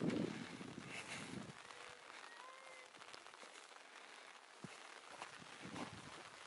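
Wind buffeting the microphone for about the first second and a half, then faint open-air hiss with a few brief, faint whistle-like tones.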